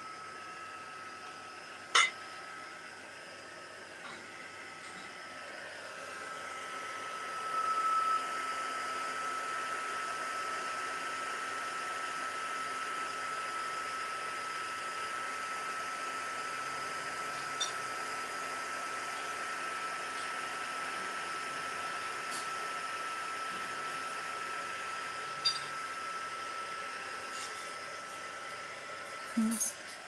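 Craft heat gun running steadily, its fan blowing hot air with a steady high whine as it dries wet acrylic paint to touch dry. A sharp knock comes about two seconds in, and the blowing grows a little louder about seven seconds in.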